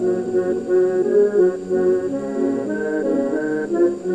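Church pipe organ and a 72-bass piano accordion playing a carol melody together, in a steady run of sustained notes over held lower tones.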